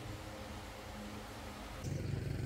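Quiet steady room tone with a faint low hum and no distinct events; just before the end it cuts abruptly to a louder low rumble.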